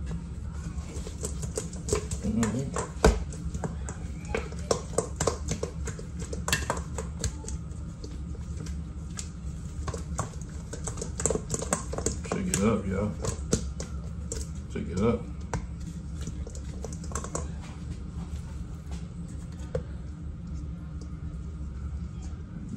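Sauced ribs being shaken in a stainless steel mixing bowl to coat them: irregular clattering and knocking of the meat pieces against the metal, coming in two long stretches, over a steady low hum.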